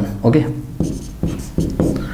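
Marker pen writing on a whiteboard: several short separate strokes as the bracketed term is written.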